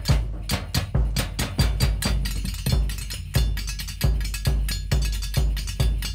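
A folk percussion break without voices: a steady beat of deep drum strokes about every half second or so, with lighter, sharper clicking strokes between them, including a square frame drum.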